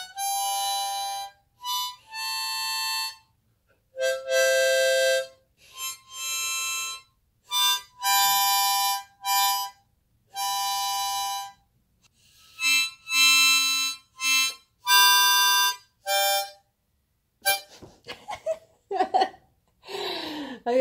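Seydel blues harmonica in G played haltingly by a beginner: a slow string of single held notes and chords, each lasting about half a second to a second and a half, separated by short silences and changing pitch from note to note. A few short, fainter sounds come near the end.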